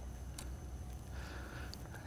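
Quiet room tone with a steady low hum and a couple of faint ticks.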